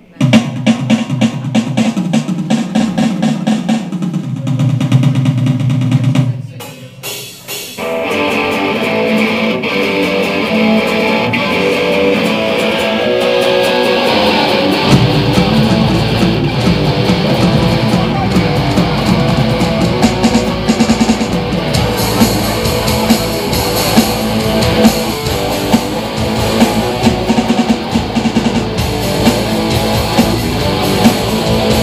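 A rock band playing the opening of a song on electric guitars, bass guitar and drums. A sparser opening with drum hits breaks off briefly about six and a half seconds in, then the full band comes in, with the low end filling out from about fifteen seconds in.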